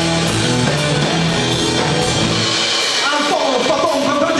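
Live rock band playing electric guitars, bass guitar and drum kit in an instrumental passage. The lead singer's voice comes back in near the end.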